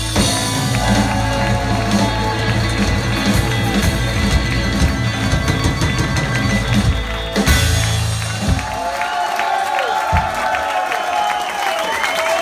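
Live rock band with drums, electric guitars and accordion playing the last bars of a song, stopping about eight and a half seconds in. The audience then cheers.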